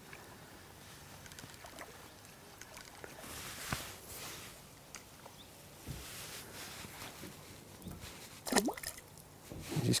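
Faint water sloshing and trickling at the lake edge, with a few light clicks.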